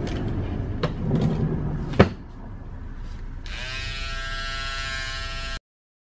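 A sharp click about two seconds in, then electric hair clippers buzzing steadily from about three and a half seconds in, until the sound cuts off suddenly.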